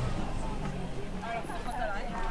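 Voices of people talking in a street, with a car's engine running low underneath that fades out about a second in.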